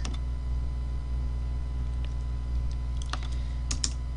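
Computer keyboard typing: a few quick keystrokes about three seconds in, over a steady low hum.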